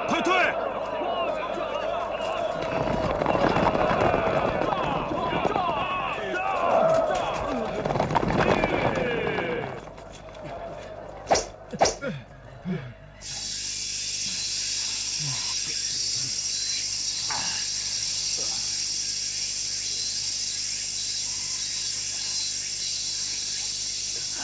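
Battle clamour of many men shouting and yelling together for about ten seconds, then a few sharp blows around eleven to twelve seconds in. From about thirteen seconds a steady high-pitched buzz of cicadas takes over, the sound of a scorching summer day.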